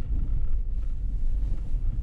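Steady low rumble of a car driving on a plowed, snow-packed road, heard from inside the cabin: engine and tyre noise.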